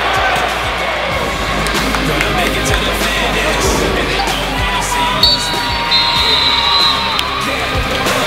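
Crowd in a sports hall cheering and shouting, with music running underneath and a held high tone a little after the middle.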